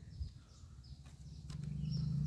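Quiet outdoor background with a few faint, short, high chirps from birds over a steady low rumble, and one light knock near the start.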